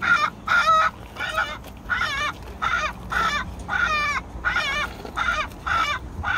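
Recorded chicken squawks played through an electronic predator game caller's twin horn speakers: short pitched calls repeating about twice a second.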